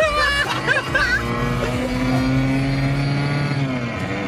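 1991 Ford Fiesta 1.4 four-cylinder petrol engine heard from inside the cabin, pulling in gear with its note rising slowly. Near the end the pitch drops as the throttle is lifted for a gear change.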